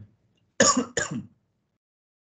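A person clearing their throat in two quick bursts about half a second in.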